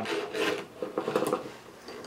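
A steel hand file rasping against the metal of a chainsaw chain, cleaning out the gullets under the cutters: two short scraping strokes in the first second and a half, then fainter.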